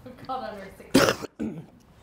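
A person clearing their throat once, sharply, about halfway through, between a few brief spoken words.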